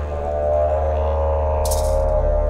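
Didgeridoo drone in a music track: a steady deep note with a held higher tone above it and a short burst of hiss near the end.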